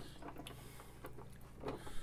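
Faint mechanical clicking from the plastic handle of a Pie Face game being turned, winding the whipped-cream arm toward firing, over a low steady hum.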